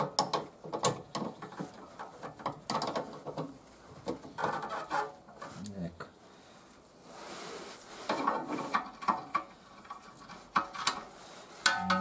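Metal spanners clinking and a ratchet wrench clicking in short irregular runs as a bolt on a car's rear axle is worked loose.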